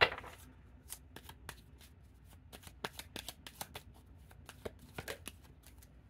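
Tarot cards being handled and shuffled on a wooden table: one sharp tap right at the start, then a run of quick irregular card clicks and flicks, busiest in the middle.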